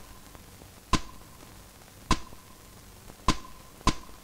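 A series of sharp percussive taps on the soundtrack, with no music under them: four in all, about one a second, the last two closer together. Each tap leaves a short ring.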